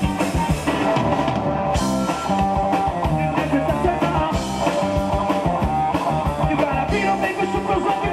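Live rock band playing at full volume: electric guitars, bass and drum kit, with a male lead singer on microphone.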